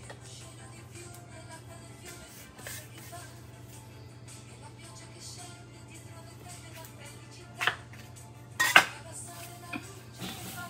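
Metal bench scraper cutting through pie dough and knocking twice against a granite countertop near the end, sharp short clacks over soft background music and a steady low hum.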